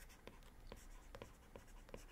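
Several faint taps and scratches of a stylus writing by hand on a tablet screen.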